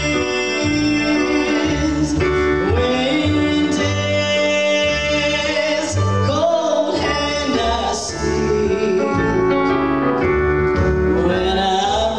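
Live gospel song: a singing voice over upright bass and keyboard accompaniment.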